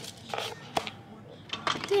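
A door being opened: a short rustle, then a sharp latch click, with a few more small clicks before the word "There".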